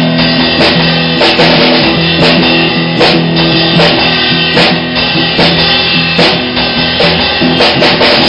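Punk rock band playing at full volume: distorted electric guitar and electric bass chords held over a Pearl drum kit, with drum hits falling steadily throughout.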